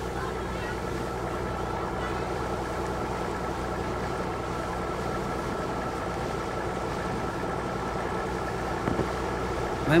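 A boat's engine running steadily, a constant hum with several steady tones over a wash of noise.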